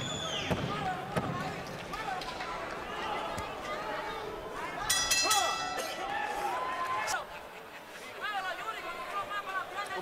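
Boxing arena crowd noise with scattered shouts from ringside, and the bell struck about five seconds in, ringing briefly to end the round.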